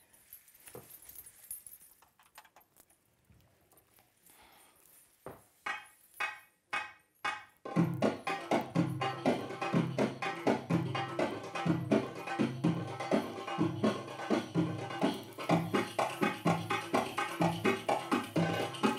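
Belly-dance drum music: after a few quiet seconds, a handful of single hand-drum strokes, then from about eight seconds in a fast, steady drum rhythm.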